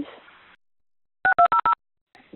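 Telephone keypad dialing: about six quick touch-tone beeps in half a second, after a second of silence, as a phone number is keyed in at the start of a call.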